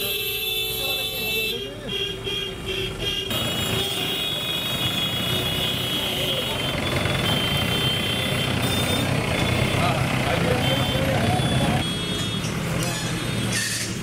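Busy street noise: many voices talking over each other amid vehicle engines and traffic. It changes abruptly about three seconds in to a denser, louder hubbub.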